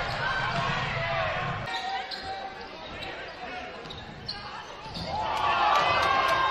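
Basketball dribbled on a hardwood gym floor, with players' and spectators' voices; the crowd grows louder near the end.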